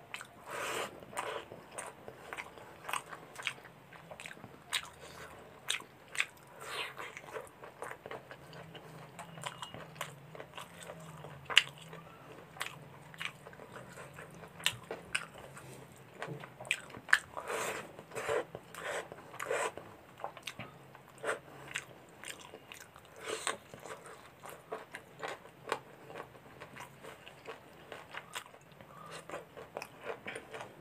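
A person eating rice and chicken curry by hand close to the microphone: chewing with an irregular string of sharp mouth clicks and smacks, and one louder snap about eleven seconds in.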